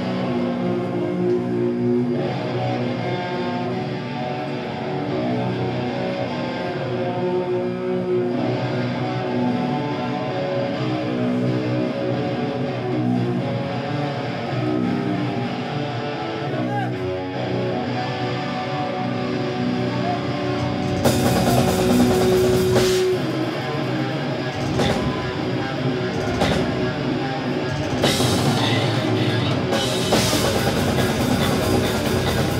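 Death metal band playing live: distorted electric guitar and bass riffing over drums. About two-thirds of the way through, crashing cymbals and heavier drumming come in.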